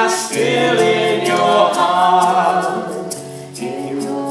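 Three voices, two men and a woman, singing long held notes in close harmony, backed by acoustic guitar and a light hand-percussion tick keeping time.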